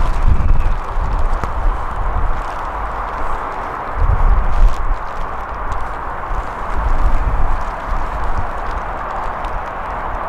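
Wind buffeting the camera microphone in gusts, a rumbling low noise that swells near the start and again about four seconds in, over a steady rushing of wind.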